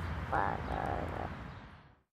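A toddler's short, faint babbling vocalisation over a steady low outdoor rumble, with the sound fading out to silence near the end.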